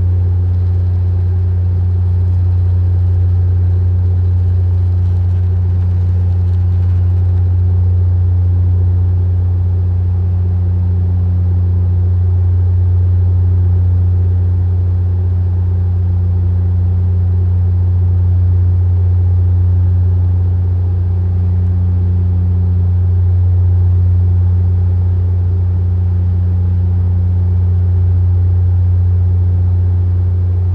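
Bombardier DHC-8-Q400 turboprop in cruise, heard inside the cabin from a forward window seat: a loud, steady low drone from the propellers with a fainter overtone an octave above, over an even rush of airflow.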